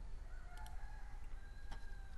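A faint, drawn-out pitched call in the background, lasting about a second and a half, over a low steady hum, with one soft click near the end.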